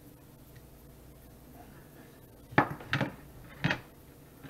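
Three sharp knocks of a kitchen knife striking a plastic cutting board while trimming the end off a smoked pork loin, the first the loudest, about two and a half seconds in, the last near the end.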